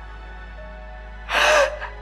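Soft, steady background music, then about one and a half seconds in a woman's sharp, breathy gasp, a quick intake of breath as she cries.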